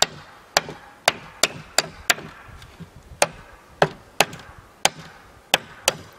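A hammer striking a wooden board laid across sawhorses: about eleven sharp blows in short, uneven runs, with a pause near the middle.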